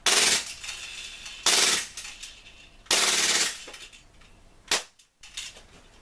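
Tokyo Marui Glock 18C gas blowback airsoft pistol firing three short full-auto bursts, the slide cycling very fast, then one short sharp report near the end. The gas magazine is running hot and humid, giving it extra power and an ungodly fast rate of fire.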